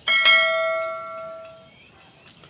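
Notification-bell 'ding' sound effect from a subscribe-button animation, struck once and ringing out over about a second and a half.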